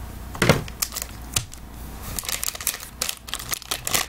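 Foil trading-card pack wrapper crinkling and tearing open under the fingers: two sharp knocks in the first second and a half, then a fast run of crackles.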